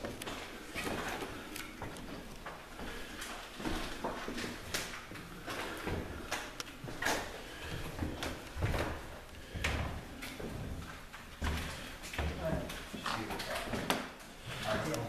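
Indistinct voices of people talking, with scattered short knocks and clicks.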